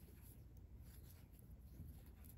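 Near silence, with faint scattered soft ticks and rustles of a steel crochet hook working fine cotton thread.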